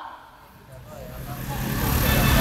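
A low rumble during a pause in speech, growing steadily louder from about half a second in.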